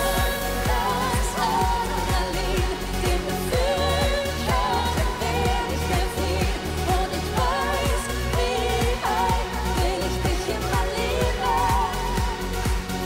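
Up-tempo pop song performed live: a woman singing a wavering melody over a steady electronic beat that pulses about twice a second.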